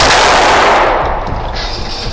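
Rapid semi-automatic pistol fire in an indoor range, the shots following so fast that they run together into one loud continuous din, which fades away after about a second.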